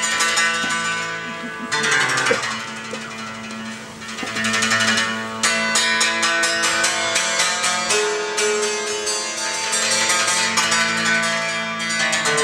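Instrumental Appenzell folk music: a hackbrett (Swiss hammered dulcimer) struck in quick runs of ringing notes, with a double bass underneath.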